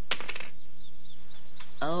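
A coin tossed onto a tabletop: it lands with a few quick clicks and a brief high ring, then a faint wavering ring carries on for about a second as it settles, landing tails up.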